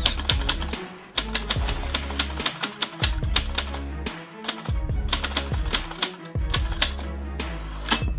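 Typewriter keys clacking in quick, irregular strokes, laid over background music with a low bass line that comes and goes.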